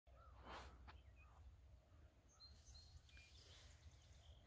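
Near silence: faint outdoor field ambience with a few distant bird chirps.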